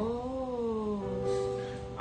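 A woman's voice singing one long held note that rises slightly, dips, then holds a steady pitch, with little audible accompaniment.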